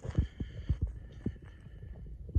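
Footsteps on loose gravel, heard as a string of low, irregular thumps.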